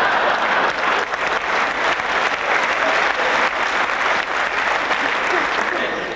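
Large audience applauding steadily, the clapping thinning a little near the end.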